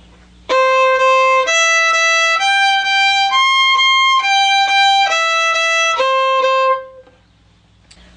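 Solo violin bowing a one-octave C major arpeggio, C–E–G–C up and back down, with each note played twice as two even strokes. It starts about half a second in and stops a little before the end.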